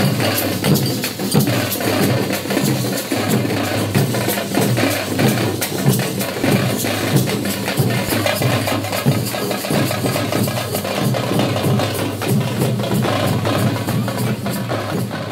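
Drums beaten in a fast, steady rhythm.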